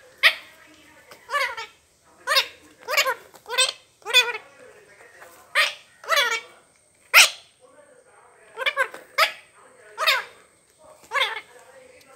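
Rose-ringed parakeet giving a string of short, loud, harsh calls, about one a second, some in quick pairs.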